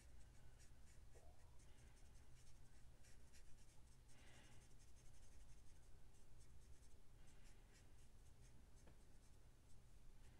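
Marker nib scratching lightly on cardstock in many small, quick colouring strokes, faint.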